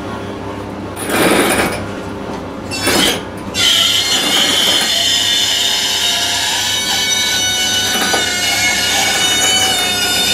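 Knocks and clanks from a hydraulic engine crane being worked, then, a little over three seconds in, a steady high metallic squeal with several held pitches sets in and carries on as the crane lowers the engine.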